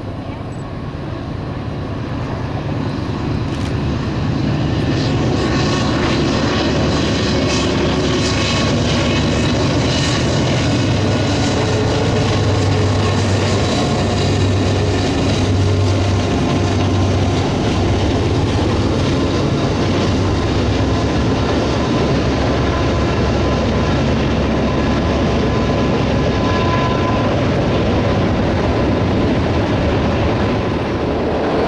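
Freight train passing: the sound builds over the first few seconds, then settles into the steady noise of diesel locomotives and cars rolling on the rails. A low engine throb pulses for a few seconds near the middle.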